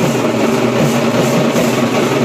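Loud, dense street-band drumming on slung snare-type drums: a fast, unbroken roll with a steady low hum under it.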